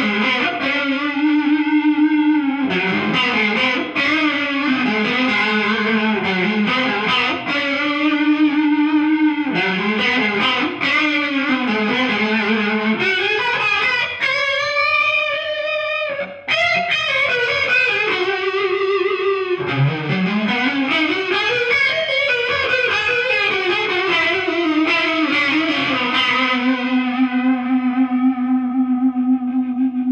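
Electric guitar lead played on a gold-top Gibson Les Paul through an EHX Small Clone chorus pedal with its rate turned up to three o'clock, giving sustained, bent notes a fast, deep wavering warble. A long slide up comes about two-thirds of the way through, and the line ends on a long held note.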